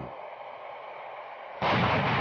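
Steady hiss, then about one and a half seconds in a sudden loud artillery blast that rings on and fades.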